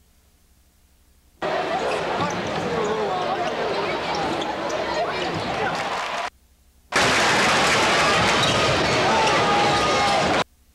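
Basketball game sound from an arena: crowd noise with a basketball bouncing on the court, in two clips that cut in abruptly, about a second and a half in and again about seven seconds in, with a short silent gap between.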